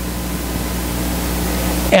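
Steady hiss of room background noise with a low hum under it, slowly getting louder.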